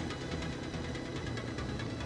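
Yamaha Warrior ATV's single-cylinder four-stroke engine running at a steady, even pace, with background music playing.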